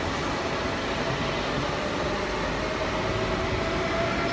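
Passenger train at a station platform: a steady rumble and hiss with a faint, even whine.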